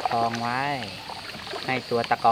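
A man's voice talking, loudest in the first second, over a faint steady high-pitched insect drone.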